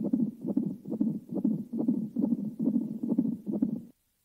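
An unborn baby's heartbeat: a fast, regular pulse of about four beats a second. It stops just before the end.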